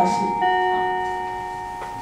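Chime notes ringing: a bell-like note sounds about half a second in over the tail of the one before, and both ring on and slowly fade.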